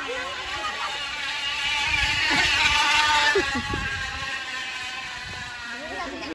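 Recorded KTM Duke motorcycle engine sound played from a speaker fitted to a bicycle. The engine note swells to its loudest about halfway through, then eases off.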